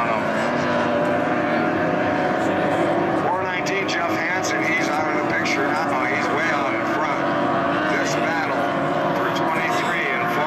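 Outboard engines of several SST 60 tunnel racing boats running at racing speed, a steady multi-engine drone whose pitch rises and falls as the boats pass.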